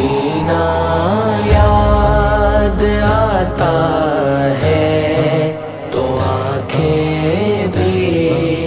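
Naat vocals: layered voices chanting a slow devotional melody over a sustained low drone, with a deeper low swell a couple of seconds in.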